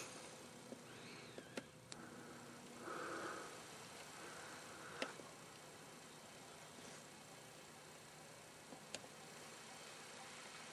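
Near silence: a faint steady hiss with a few soft clicks scattered through it and a faint, brief sound about three seconds in.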